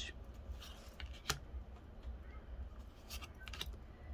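Pokémon trading cards being handled in the hands: faint slides and light clicks as cards are moved through a small stack, with the sharpest click about a second in and a few more near the end, over a low steady room hum.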